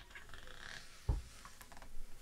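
Hands handling the paper pages of an open atlas: faint rustling of paper, with a soft low thump about a second in and another near the end.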